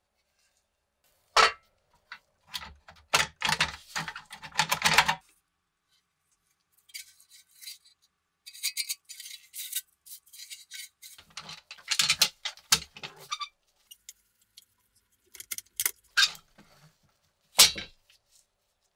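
Pressed-steel parts of a rusty toy dump truck clanking, clinking and rattling as they are handled and set down on a wooden workbench, in several separate bursts of clatter with silence between.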